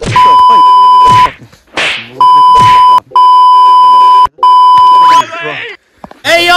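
A loud, steady one-tone beep, the kind used to bleep out speech, sounding four times (about a second, under a second, then two longer stretches almost back to back), with voices shouting underneath and in the gaps.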